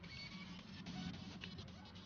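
Faint background music, with small scratchy clicks of resistor leads being pushed into a plastic solderless breadboard.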